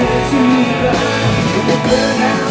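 Live rock band playing: electric guitars, bass and drums.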